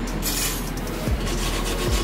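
A short hiss of WD-40 aerosol spray soon after the start, then a steel wire brush scrubbing the grimy metal of the front suspension.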